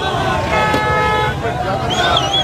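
A vehicle horn sounds one steady blast of a little under a second, over the shouting and voices of a large crowd.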